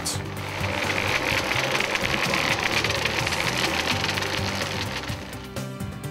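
A fast, even mechanical rattle, like a machine running, over background music with steady low tones; the rattle fades out near the end.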